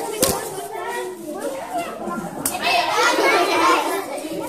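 A group of children chattering and calling out over one another, the voices growing louder in the second half. A single sharp click sounds about a quarter second in.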